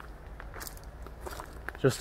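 Footsteps on a leaf-strewn garden path, a few soft crunches over a low steady rumble.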